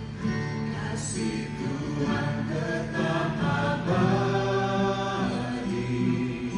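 A mixed group of men and women singing an Indonesian worship song together into microphones, holding long notes that move between pitches.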